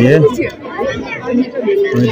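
Speech only: a man finishes a sentence in Hindi, then several people chatter at once in the background.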